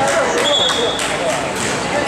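Basketball bouncing on a gym court among echoing shouts from players and spectators, with a brief high squeak about half a second in.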